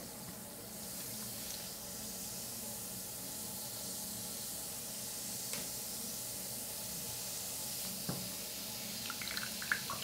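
A Bikkura Tamago bath ball fizzing steadily as it dissolves under water, held in a hand in a basin, with a couple of faint ticks from the water.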